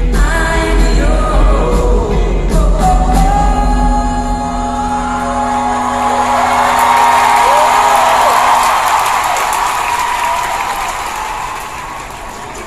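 Live band playing held chords and notes that die away in the second half, while an arena crowd's cheering and screaming swells over them.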